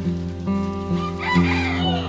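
A rooster crowing once, starting about a second in, over steady background music with a regular beat.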